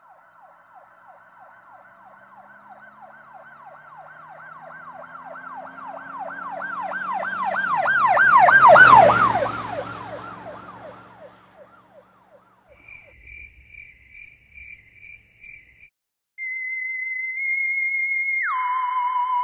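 Emergency vehicle siren in a rapid yelp, about three wails a second, growing steadily louder to a peak about nine seconds in, then fading with its pitch dropping as it passes, a low engine rumble beneath. Faint pulsing beeps follow, and near the end a loud steady electronic tone starts.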